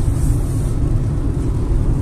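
Steady low rumble of road and engine noise inside the cabin of a Hyundai HB20 1.0 hatchback driving on the highway.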